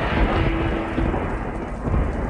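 Thunder rumbling with rain, a storm sound effect on a TV serial's soundtrack, with a faint held note underneath.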